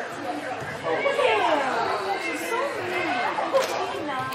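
Several people's voices chattering and calling at once, overlapping, too mixed to make out words, with one sharp knock late on.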